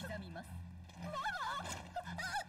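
A voice from the anime's soundtrack speaking quietly, its pitch rising and falling, over a steady low hum.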